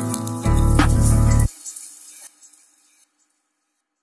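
Backing music with a heavy bass and drum beat that cuts off abruptly about one and a half seconds in: the end of the track, followed by a short fading tail and then silence.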